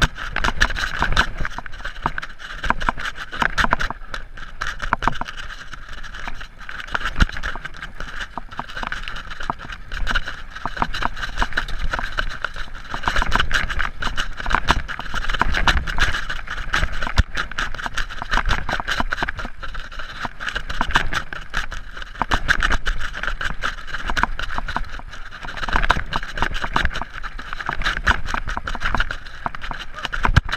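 Mountain bike descending a rough dirt trail at speed: a continuous clatter of frame, chain and components rattling over rocks and roots, with a steady high buzz underneath and wind rumbling on the microphone.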